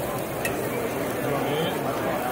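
Babble of many people talking at once in a large, busy exhibition hall, with one brief light click about half a second in.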